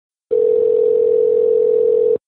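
Telephone ringback tone heard over a phone line: one steady, slightly pulsing tone that starts about a third of a second in. It is the sign that the called phone is ringing at the other end.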